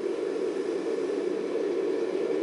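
Five-segment solid rocket booster firing on a horizontal test stand: a steady, unbroken rushing noise, heard through a TV's speaker, thin in the bass, with most of its energy in the low mid-range.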